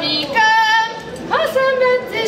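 A young female voice singing a Hungarian folk song, holding long notes, with a quick upward slide in pitch about a second and a half in.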